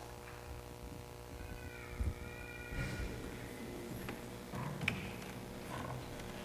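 Quiet pause in a hall full of people: scattered faint knocks and shuffles from the audience and the choir on the risers over a steady electrical hum, with a brief faint high-pitched sound near the start.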